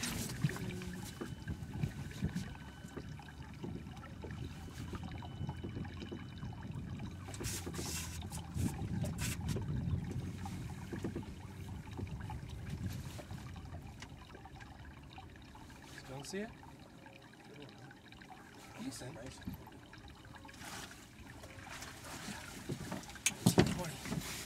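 Water lapping and trickling around a small fishing boat, under a low rumble of wind on the microphone, with a few sharp knocks on the boat. Brief low talk near the end.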